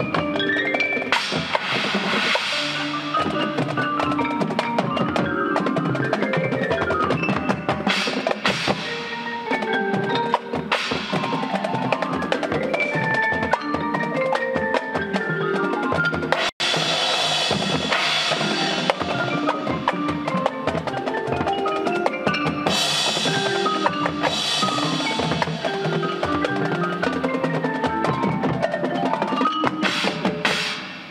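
Marching band playing its field-show music, with the front ensemble's marimba and xylophone and the drums prominent. The sound cuts out for an instant a little past halfway.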